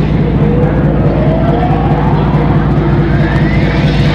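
Loud sound track played back for the flash mob dance: a steady low hum under one long rising whine that climbs in pitch across the four seconds.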